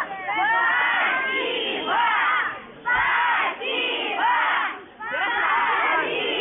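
A large group of children shouting "Spasibo!" ("Thank you!" in Russian) together, over and over, roughly once a second, each shout made of many overlapping voices.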